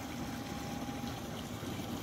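Steady rush of flowing river water.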